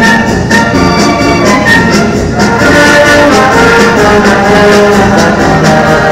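Municipal band playing a Mexican medley: trumpets and trombones carry the tune over a steady percussion beat.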